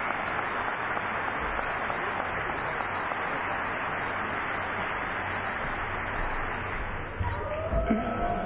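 Large audience applauding steadily. Near the end a few low knocks and a voice come in as the applause eases.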